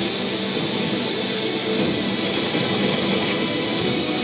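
Background music from a television news report, heard through the television's speaker.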